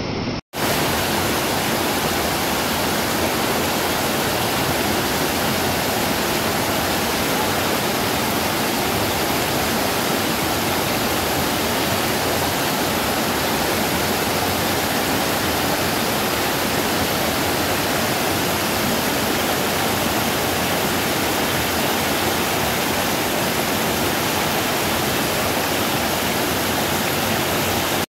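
A waterfall's water rushing steadily, an even hiss that holds at one level without change. It starts after a brief cut-out about half a second in.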